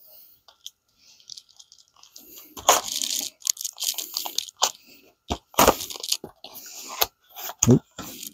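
Utility knife blade slicing open the seal of a small cardboard box: a series of short, rough scraping cuts with a few sharp clicks, starting about two and a half seconds in.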